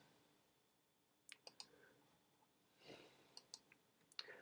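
Near silence, broken by a few faint computer mouse clicks: three in quick succession about a second and a half in, and a few more near three seconds in.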